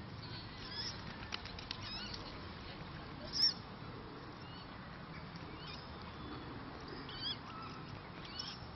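A bird giving a few short, high-pitched calls, the loudest about three and a half seconds in, over a steady outdoor background hiss.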